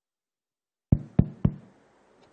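Three quick knocks, about a quarter second apart, starting about a second in, followed by faint rustling.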